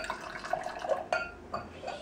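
Wine being poured from a glass bottle into a wine glass, a steady trickle of liquid.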